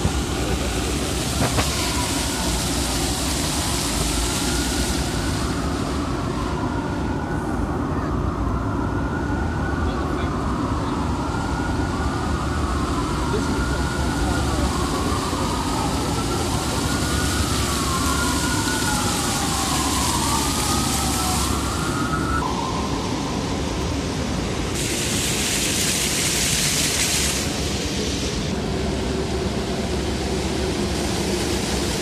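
A wailing emergency-vehicle siren, its pitch sweeping up and down every couple of seconds, that cuts off suddenly about 22 seconds in. Under it is a steady wash of city traffic and splashing fountain water.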